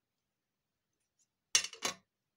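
Near silence, then about one and a half seconds in, a tube of Scotch liquid glue is set down on a plastic cutting mat: two short knocks about a third of a second apart.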